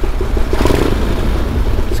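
Flying Millyard's 5000cc V-twin, built from two cylinders of a Pratt & Whitney Wasp radial aircraft engine, running at low, near-idle revs inside a road tunnel, with a louder rush of noise swelling about half a second in and easing off a second later.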